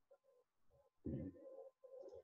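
Near silence in a small room, with a short, faint murmur of a man's voice about a second in.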